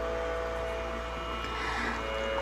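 A steady background hum with several held tones, unchanging and with no voice over it.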